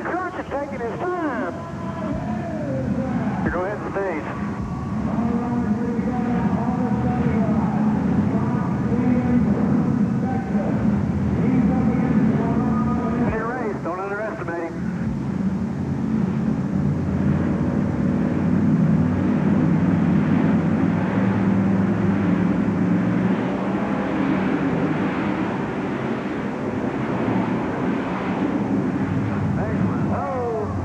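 Monster truck engines running hard through a side-by-side race, a loud steady drone that swells and eases, with bursts of a voice over it.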